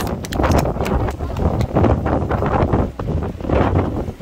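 Wind buffeting the microphone in uneven gusts, a loud rumbling noise.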